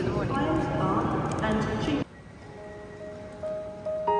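A woman's voice over the hubbub of a busy station hall, cut off suddenly about halfway through; soft background music with long held notes then starts and builds.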